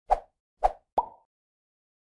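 Three quick popping sound effects about half a second apart, the last one ending in a brief ringing tone.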